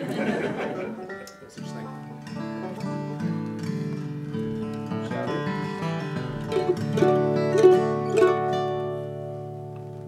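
A short burst of laughter, then a bluegrass string band of mandolin, banjo, upright bass, acoustic guitar and dobro starts a slow instrumental intro. Plucked notes ring out and build to a peak near the end before fading.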